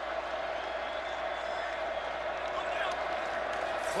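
Stadium crowd noise: a steady roar of many voices from a large football crowd.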